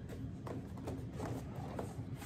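A few faint knocks and scuffs of a cardboard gift box being handled as it is worked out of its cardboard sleeve.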